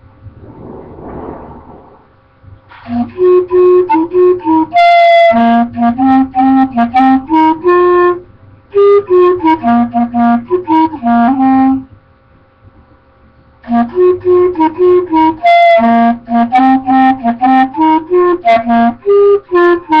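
Clarinet played by a beginner: a breath, then three phrases of short, repeated melody notes separated by brief pauses.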